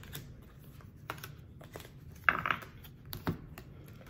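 Cards being dealt one at a time from a small deck onto a tabletop: light taps and snaps of card on card and on the table, with a louder brief rustle about two seconds in.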